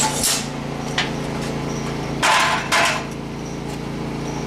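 Several sharp metal knocks from tapping a covered conical pour mold that holds a freshly poured lead smelt. The two longest and loudest come about two-thirds of the way in. The tapping settles the molten lead into the tip of the mold and thins the slag around the lead button.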